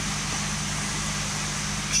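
A steady low mechanical hum from running machinery, with an even hiss over it.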